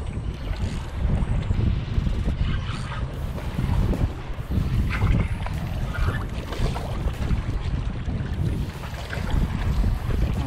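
Wind noise on the microphone, with a few faint clicks from a spinning reel as a hooked fish is reeled in.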